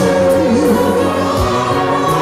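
South African gospel choir singing in isiZulu, the voices holding long, wavering notes over steady low accompaniment.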